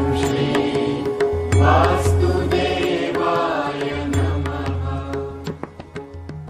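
Devotional intro music: a voice chanting a mantra over a steady low drone, fading out near the end.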